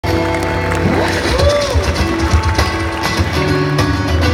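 Live pop music played through a stage PA, with an acoustic guitar, sustained notes and a steady low bass pulse. About a second in, a gliding tone rises and falls.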